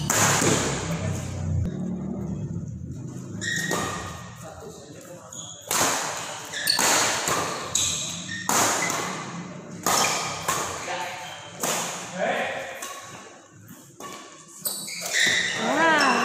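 Badminton rackets striking a shuttlecock during a doubles rally. Each hit is a sharp smack that rings out in a large echoing hall. After one hit at the start and a lull of a few seconds, the hits come every second or two.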